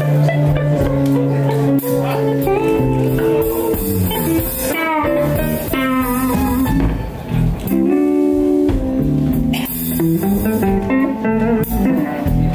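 Live blues band playing: an electric guitar solo with bent, gliding notes over bass guitar and drums.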